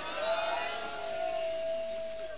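One long steady tone through the public-address loudspeakers: it rises briefly at the start, then holds at one pitch for about two seconds and fades just after.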